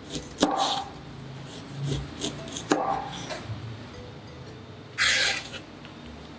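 Chinese cleaver slicing fresh ginger on a plastic cutting board, with a few sharp knocks of the blade on the board, the loudest about half a second and nearly three seconds in. Near the end comes a short scrape as the blade slides across the board to scoop up the slices.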